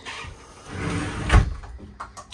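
Frosted-glass doors of a radius corner shower being pulled open: a rising sliding rub, then a single sharp knock about one and a half seconds in.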